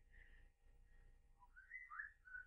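Near silence, with a person whistling a few soft, short notes under their breath near the end.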